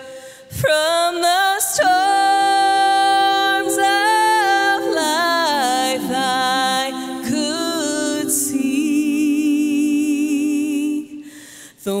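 Women singing a gospel song in close harmony, unaccompanied and through microphones, with long held notes and vibrato. The phrases break briefly about half a second in and again just before the end.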